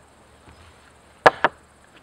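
Two sharp knocks on the plywood workbench frame, about a fifth of a second apart, a little over a second in.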